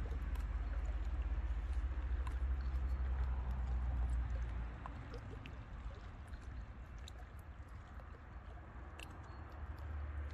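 Small lake waves lapping and splashing against shoreline rocks, a steady watery wash with small clicks and splashes. Wind buffets the microphone with a low rumble through the first half, dropping away about five seconds in.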